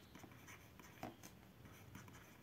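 Near silence with the faint scratching of a stylus writing a word on a tablet, and one soft tick about a second in.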